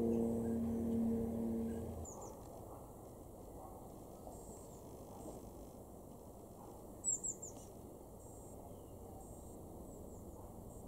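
Collared dove cooing, low and repeated, stopping about two seconds in. Then a blue tit's thin, high calls: a short note soon after, and a quick run of three notes, the loudest, about seven seconds in.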